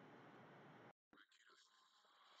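Near silence: a faint steady hiss that drops out completely for a moment about halfway through, then comes back fainter.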